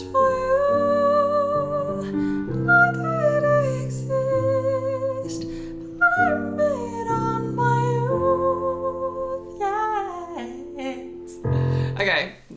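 A woman singing a slow ballad melody to her own digital piano chords, with vibrato on the held notes. She is deliberately singing it pitched too high, above her most flattering vocal range.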